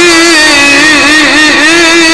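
A man's amplified voice holding one long chanted note of an Arabic supplication, wavering in small ornamental turns around a steady pitch.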